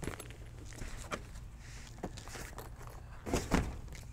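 Handling noise from a zippered soft carrying case being lifted off a table and set aside: a few light clicks and rustles, then a couple of dull thumps near the end as it is put down.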